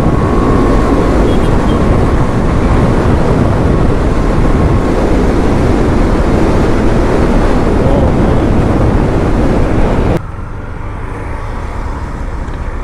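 Wind and road noise of a KTM Duke 390 motorcycle ridden at speed, a loud, steady rush. About ten seconds in it cuts abruptly to a quieter, duller riding sound.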